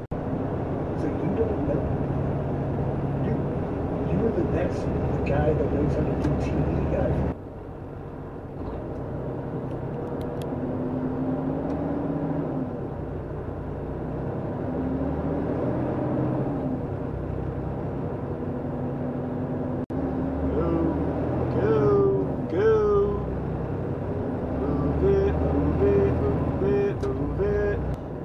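Engine and road noise inside a moving car's cabin, with indistinct voices in the background. The sound drops off abruptly about seven seconds in and shifts again around twenty seconds in.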